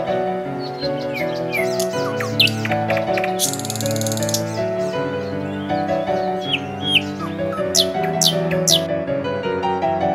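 Background music of sustained, slowly changing chords, with birds chirping over it in short, quick calls that come more often in the second half.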